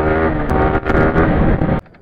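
Yamaha sport motorcycle engine running in second gear at low road speed, with a short dip in level a little before the middle. The sound cuts off abruptly near the end.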